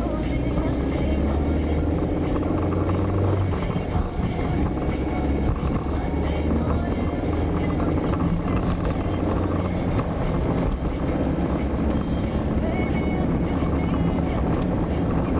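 A car's engine drone and tyre and road rumble heard from inside the cabin while cruising steadily.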